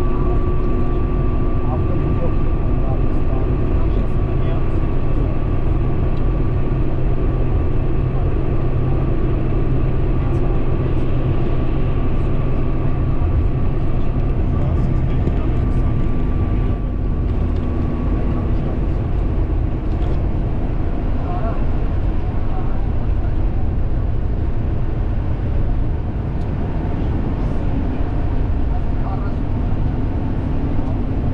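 Steady road noise inside a car cruising at highway speed: tyre and engine drone, with a faint steady whine that fades out about two-thirds of the way through.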